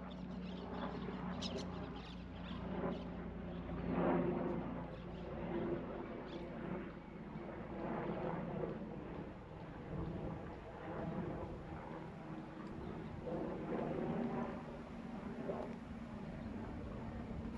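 Distant helicopter droning steadily, with a held low tone that swells and fades every couple of seconds.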